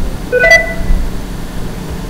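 A short electronic alert chime of a few stacked tones about half a second in, the kind a computer plays when a dialog box pops up. It sounds over a steady low hum.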